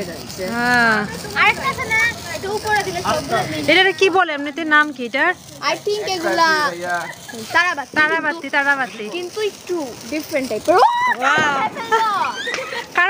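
People talking and calling out, several high-pitched voices overlapping.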